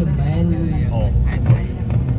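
A person's voice over the steady low drone of a moving road vehicle, heard from inside the vehicle.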